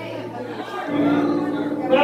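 People's voices in a large hall, with an electric keyboard holding a steady note that comes in about a second in.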